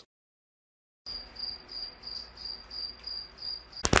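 Cricket-like chirping: a high, even chirp repeating about three times a second, which starts about a second in after total silence. A sudden loud crack cuts in just before the end.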